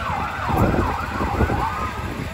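Police car siren going into a fast yelp, its pitch sweeping rapidly up and down several times a second.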